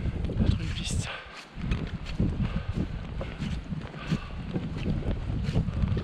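A person walking slowly through deep snow: footsteps and breathing about every second and a half, over wind rumbling on the microphone.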